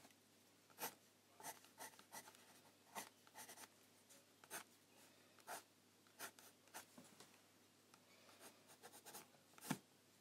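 Faint, irregular short scratching strokes of a Faber-Castell Pitt pencil drawing over a watercolour painting on sketchbook paper, with a louder stroke near the end.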